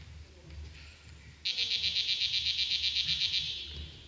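An electronic buzzer sounds for about two seconds, starting about a second and a half in: a high, rapidly pulsing buzz, about seven or eight pulses a second, that fades out near the end.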